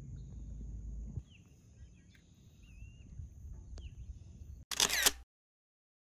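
Outdoor ambience on open water: low wind and water rumble for about the first second, then a quieter stretch with a few faint high chirps. A brief loud harsh burst comes near the end, and the sound cuts off abruptly to silence.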